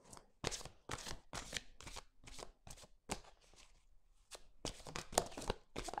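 Tarot cards being shuffled by hand: a run of soft, irregular card clicks and slaps, with a brief pause a little past the middle, ending as a card is drawn and laid on the cloth.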